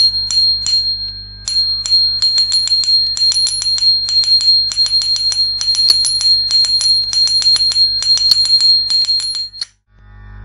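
Small metal bells jingling. A few separate shakes come first, then a short gap and a fast, irregular run of jingles over a steady high ring, which stops suddenly just before the end.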